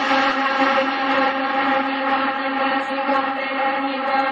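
Melodic techno breakdown: a sustained synth chord holds steady with no drums or bass beat.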